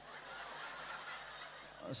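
Audience laughing softly at a joke, a diffuse spread of chuckles from many people; a man's voice comes in right at the end.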